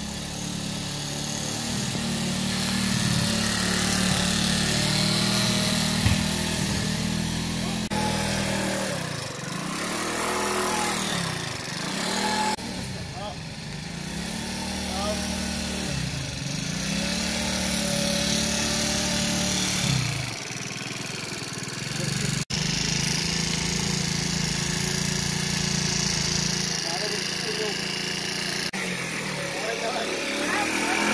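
A small moped scooter engine running as it is ridden, its pitch rising and falling several times as the throttle is opened and closed, with voices in the background.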